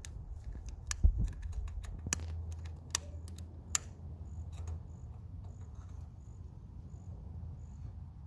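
Butane utility lighter being clicked again and again to light fatwood fire starters in a wood-pellet pizza oven, the clicks coming thick in the first four seconds. A faint insect chirp repeats about every half second after that.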